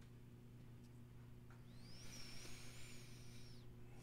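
Near silence over a steady low electrical hum. About one and a half seconds in, a faint hiss of breath with a thin high whistle that rises and then falls, lasting about two seconds.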